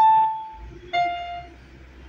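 Yamaha PSS-F30 mini keyboard playing two single notes one at a time: a higher note at the start, then a lower one about a second later, each fading out quickly.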